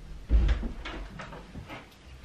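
A heavy dull thump about a third of a second in, followed by several lighter knocks and clicks, the sound of household objects being handled.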